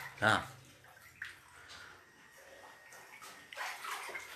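Shallow floodwater on a tiled floor splashing as a hand grabs at small fish swimming in it, with a louder splashing swell near the end.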